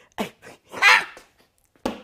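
A woman laughing in short breathy bursts, with one loud rushing burst about a second in and a brief silent catch before more laughter near the end.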